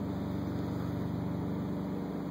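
Steady low drone of an idling truck engine, heard from inside the cab, holding one even pitch with no change in speed.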